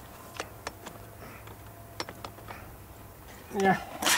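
Short sharp metallic clicks and knocks, about six of them in the first two and a half seconds, from the steel frame and folding legs of a carp unhooking cradle being worked open by hand.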